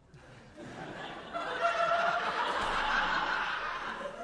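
Audience laughing in the hall, swelling about a second in and easing off near the end.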